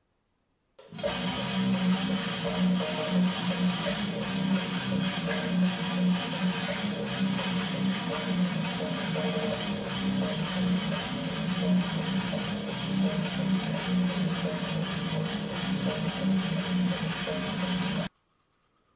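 Distorted Jackson electric guitar playing a slam death metal riff: fast, repeated low chugging notes. It starts suddenly about a second in.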